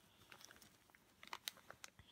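Near silence, with a few faint clicks and rustles from thin craft cord and plastic zip bags being handled.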